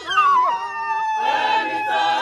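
Group of voices singing a cappella. One high voice holds a long, slightly falling note, and the full choir comes in about a second in.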